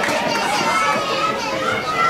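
Many high-pitched voices shouting and cheering over one another, the celebration of a goal.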